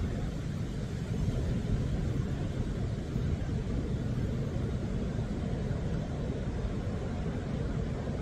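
Steady low rumble of ocean surf.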